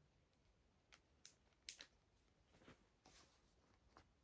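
Near silence, broken by a handful of faint clicks and light rustles from handling a fashion doll while dressing it in fabric trousers.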